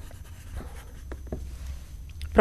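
Quiet studio room tone: a steady low hum with a few faint, short clicks.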